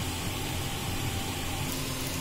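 Steady background hum and hiss of room noise, with no distinct events.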